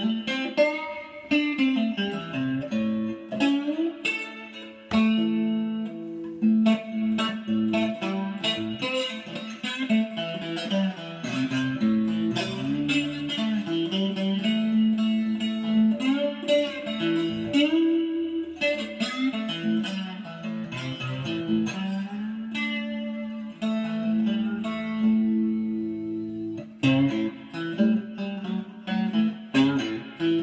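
Three-string cigar-box-style guitar with a tin-plate top and a single-coil pickup, played with a slide through a small Roland Cube amplifier. The notes glide in pitch over a steady held low note.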